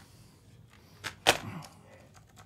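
A sharp click followed about a quarter second later by a louder, sharper knock, both brief, over low room background.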